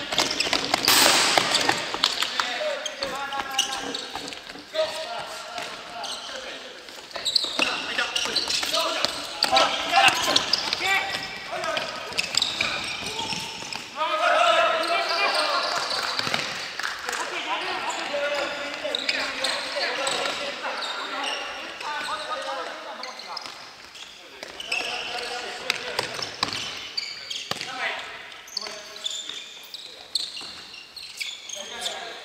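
Futsal players calling and shouting to each other during play, with the ball thudding off feet and the wooden floor, all ringing in a large, echoing gymnasium.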